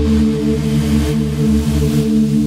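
Native Instruments Straylight granular synthesizer playing a low sustained chord held steady. Soft airy swells of noise rise above it about once a second.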